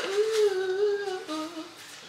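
A woman humming a slow gospel tune: one long, slightly wavering note for over a second, then a shorter, lower note.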